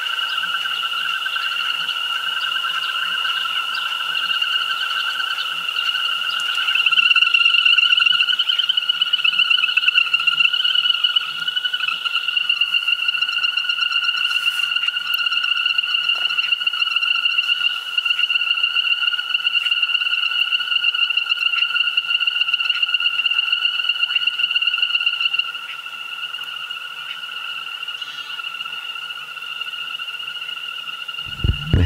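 A steady, high-pitched trilling chorus of calling frogs, holding one pitch throughout. It grows louder and fuller about seven seconds in and eases back a few seconds before the end.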